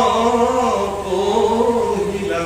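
A man chanting verses of a Bhagavata recitation in a melodic, sustained voice through a microphone, holding long notes that rise and fall slowly in pitch.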